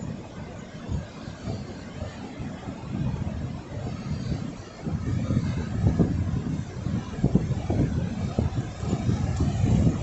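Wind buffeting the microphone over the hiss of low surf washing onto the sand, the gusts growing stronger from about five seconds in.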